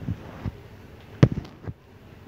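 A few short, sharp thumps and clicks, the loudest a little past a second in, followed by a quick cluster and one more near the end.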